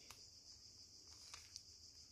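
Near silence, with two faint plastic clicks about a second and a half in, from the MoYu MeiLong Square-1 puzzle being turned by hand.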